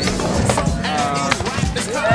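Skateboard rolling on a mini ramp, with short knocks from the board, under music with a voice in it.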